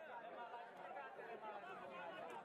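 Faint chatter of several people talking at once, voices overlapping with no single clear speaker.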